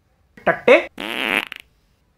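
Two short wordless vocal sounds from a man, then a buzzing, fart-like noise lasting about half a second.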